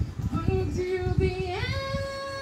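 A woman singing a cappella, holding one note and then stepping up to a long, higher held note about one and a half seconds in. It plays from a TV and is picked up in the room, with low rumbling room noise under it.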